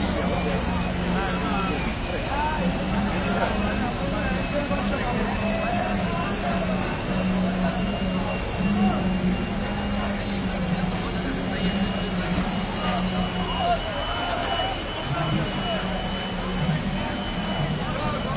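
A steady low engine hum with a thin high whine that slowly rises in pitch, over a background of many people talking.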